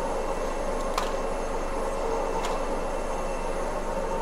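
Steady machine hum with several held tones from the CT room's equipment, with two faint light clicks about one and two and a half seconds in as the contrast injector's connecting tubing is handled.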